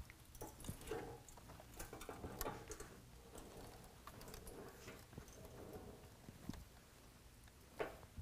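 Faint, scattered light ticks and rubbing as hands press a mesh bug screen against a plastic truck grille to set its adhesive stud fasteners.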